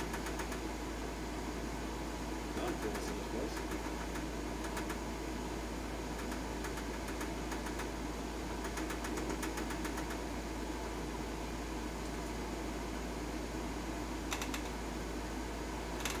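Steady hum and rush of forced air from a ventilation system, with a few faint clicks scattered through it.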